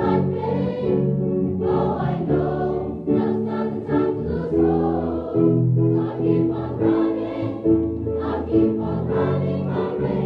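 A large mixed choir of women, men and children singing a song together, in held notes that change about every second.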